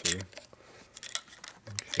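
Scattered light metallic clicks and taps as a hand tool works among the shift forks and gears of a Harley-Davidson four-speed transmission.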